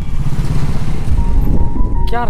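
Motorcycle running at low speed, a steady low rumble. Background music comes in faintly with a held note about a second in.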